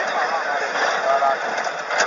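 Several voices talking over one another inside a moving trotro minibus, over steady engine and road noise.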